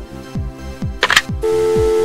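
A click, then a telephone dial tone about one and a half seconds in: a steady, unbroken hum that signals the line is connected to the exchange. Background music with a regular beat plays underneath.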